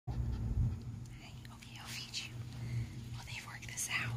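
Quiet whispered speech over a steady low hum.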